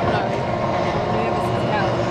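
Engines of a pack of 850cc-class racing powerboats running flat out across the water, heard from the bank as a steady many-toned drone whose pitches shift up and down as the boats race along.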